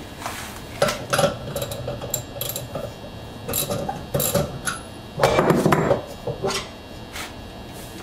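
Metal clinks and knocks as a wrench loosens the single nut on a centrifuge's cast aluminium rotor bowl and the bowl is lifted off its spindle. There is a longer, louder clatter a little past halfway.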